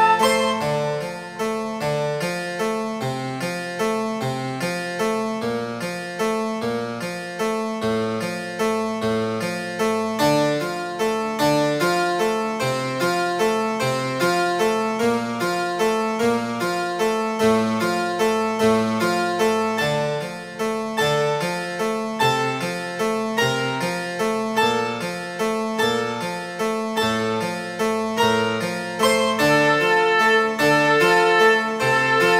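Prepared piano playing a fast, even stream of notes, about four or five a second, returning again and again to the same few pitches; the preparations give the strings a dry, harpsichord-like twang.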